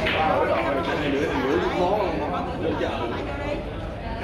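Indistinct chatter of several people talking in a large hall.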